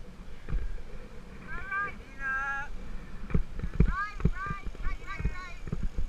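Mountain bike jolting over a rutted sandy dirt track, its frame and the mounted camera knocking and rattling irregularly, with wind on the microphone. Over it, a rider calls out in a run of high-pitched, rising-and-falling shouts.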